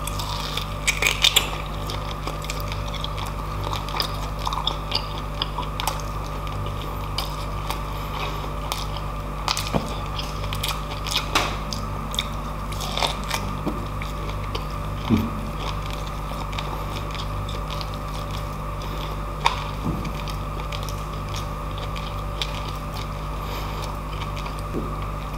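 Close-up eating sounds from a chunk of roast beef (lechon baka): a bite at the start, then chewing with scattered wet smacks and small crunches, over a steady low hum.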